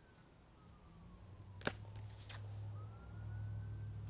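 Faint wailing siren of a passing emergency vehicle, its pitch sliding slowly down and then rising again, over a low hum that builds up. A single click of a record sleeve being handled about a second and a half in.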